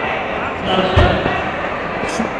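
A single dull, heavy thump about a second in, over a steady background of voices.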